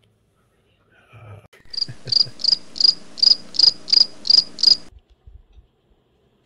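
A cricket chirping, nine high chirps at about three a second, which stop abruptly near the end.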